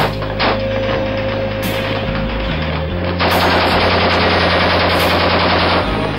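Gunfire from a rifle and a belt-fed machine gun, with sharp separate shots early on and a dense, loud stretch from about three seconds in, mixed with rock music that has a heavy bass line.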